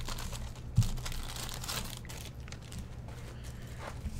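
Clear plastic bag and card sleeves crinkling as a stack of trading cards is handled, with one sharp thump just under a second in. The crinkling is busiest in the first two seconds and then thins out.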